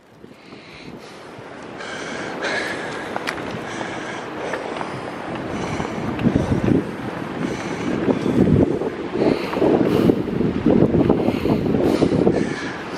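Wind buffeting a handheld camera's microphone in gusts. It builds over the first couple of seconds, with heavier gusts from about halfway through.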